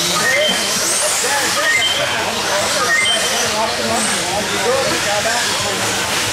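Radio-controlled buggies running on a dirt track, with short high whines coming and going every second or so, over a steady background of many people talking in the hall.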